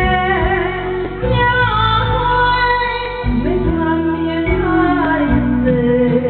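A woman singing with instrumental accompaniment, her held notes wavering with vibrato over a bass line that changes note about every second.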